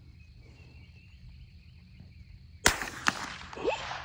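A single shot from a Henry Golden Boy .22 LR lever-action rifle about two and a half seconds in: one sharp crack, followed by a second, quieter crack a fraction of a second later. Before it, faint steady insect chirring.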